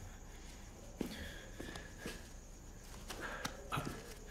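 A few faint footsteps and soft clicks against quiet room tone.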